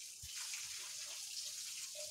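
Steady soft hiss of water, as from light rain or runoff on wet ground, with one brief low thump about a quarter second in.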